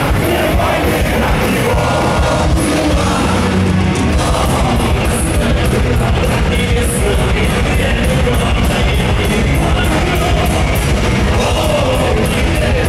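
Power metal band playing live: distorted electric guitars and drum kit with steady, evenly spaced cymbal hits, and a lead vocalist singing over the top.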